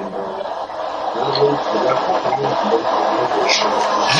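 A man's voice over an internet call breaking up into garbled, hissing digital distortion: the connection is cutting up, so the speech comes through as choppy noise instead of words.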